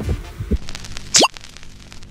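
A cartoon-style pop sound effect: a soft low thud, then a quick, sharply rising sweep about a second in, over faint background music.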